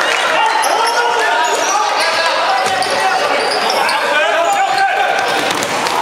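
A basketball bouncing on a hardwood court during live play, with players and spectators calling out, all ringing in a large sports hall.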